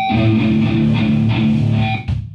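Amplified electric guitar and bass ringing out held, distorted chords between songs, changing chord about halfway through.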